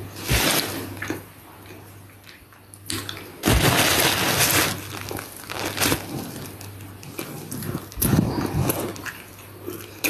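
Close-up eating sounds of a flaky pastry: bites and chewing heard as several short noisy crunches, the loudest about three and a half seconds in, over a steady low hum.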